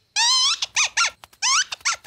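Cartoon mole squeaking in fright: one longer high-pitched squeak, then a rapid string of short squeaks, many falling in pitch.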